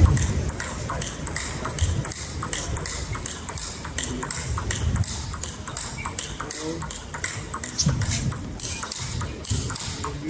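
Table tennis practice rally: a quick, even run of clicks as the celluloid-type plastic ball is struck by rubber-faced bats and bounces on the table, several strikes a second, echoing in a large hall.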